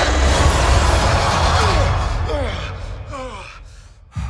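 Cinematic trailer sound effects: a loud, dense rumble with heavy low end, then several falling sweeps as the sound fades out over the last two seconds.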